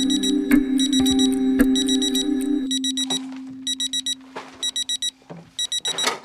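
Electronic alarm clock beeping in quick clusters of high-pitched beeps, mixed into a music track whose low sustained drone fades out about halfway through, leaving the beeps on their own.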